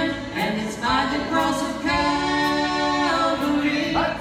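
A woman and a man singing a slow gospel song together, with long held notes, accompanied by acoustic guitar.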